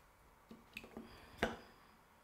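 A glass perfume bottle handled and set down against a glass: a few light knocks, then one sharper glass clink about one and a half seconds in, with a brief high ring.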